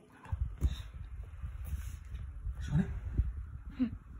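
Claymore rechargeable camping circulator fan switched on and running, its airflow buffeting the microphone as an uneven low rumble that starts about a third of a second in. A couple of short voice sounds come near the end.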